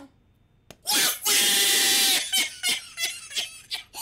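A man's loud scream, held at one pitch for about a second, starting about a second in after a brief hush. It is followed by short, choppy bursts of voice.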